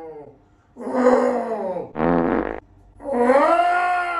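An elderly man giving wordless mock-angry growls and roars. There are three cries: one about a second in, a short rasping one at about two seconds, and a longer drawn-out one from about three seconds.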